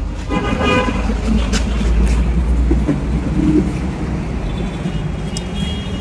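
Road traffic going by: a heavy vehicle's low rumble for the first few seconds, with a vehicle horn tooting briefly near the start.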